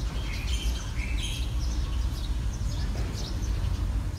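Outdoor ambience with small birds chirping over a steady low rumble.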